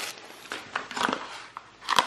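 Paper packaging being handled: tissue paper and a cardboard phone box rustling in short, irregular bursts with light taps, the loudest rustle near the end.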